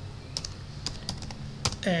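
Computer keyboard typing: a handful of separate, irregularly spaced keystrokes.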